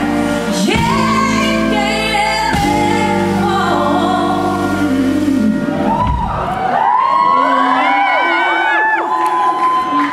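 Live female vocals over a band with sustained keyboard chords. About six seconds in the band drops out and the voice carries on alone with high sliding notes, while whoops from the crowd start to come in.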